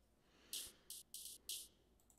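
Electronic hi-hat sample playing on its own in a short pattern. Four short, crisp, high-pitched hits in the second second, thin and quiet, with no low end.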